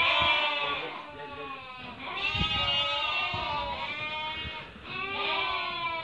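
A penned flock of merino sheep bleating, several animals calling over one another. The calls come in three spells: at the start, from about two to four seconds in, and again near the end.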